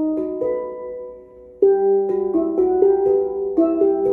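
Double steel pans played with sticks: struck notes ringing on and dying away to a brief lull about a second in, then a quicker run of notes from about one and a half seconds.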